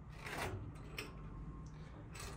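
Latch on the charger's sheet-metal front access door being turned and the door opened: a short scrape about half a second in, then a sharp click and a fainter click later.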